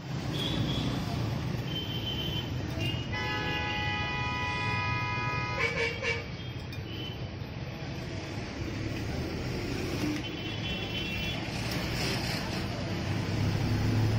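Steady street traffic rumble with a vehicle horn held for about two and a half seconds, starting about three seconds in. A fainter, higher-pitched horn toot follows around ten seconds in.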